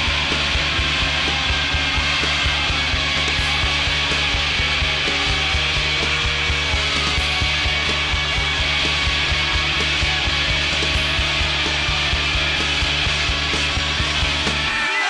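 Loud, distorted rock instrumental passage with no vocals: a harsh, noisy wall of sound over a steady bass and rapid drum strokes.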